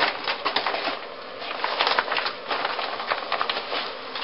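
Clear plastic packaging crinkling and rustling as it is handled and opened, in a dense run of irregular crackles.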